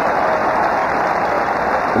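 Ballpark crowd applauding and cheering in one steady, continuous wash of clapping and voices.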